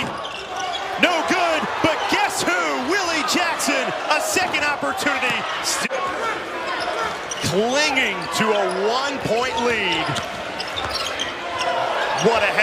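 Basketball game sound on an indoor hardwood court: the ball dribbling with repeated sharp bounces and short sneaker squeaks, over crowd voices and shouts.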